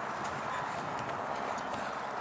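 A cross-country runner's footfalls thudding on soft, muddy turf, a few irregular steps, over a steady outdoor background noise.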